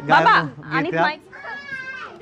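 A man's voice speaking excitedly, then in the second half a short, thin, high-pitched voice-like call held at a steady pitch.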